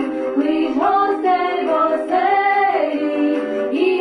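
A small group of women and girls singing a Ukrainian carol (shchedrivka) together, unaccompanied, in long held notes.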